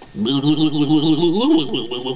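A man's voice doing a drawn-out cow "moo", jumpy and jiggly as the book asks, with the pitch wobbling and rising near the end.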